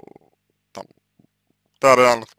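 A man's speaking voice, mostly pauses: a short low hesitation sound at the start, a brief mouth sound, then a loud word beginning near the end.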